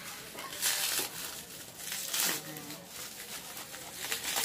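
Plastic bubble-wrap packaging rustled, crinkled and pulled open by hand, with two louder bursts of crackling, about a second in and again about two seconds in.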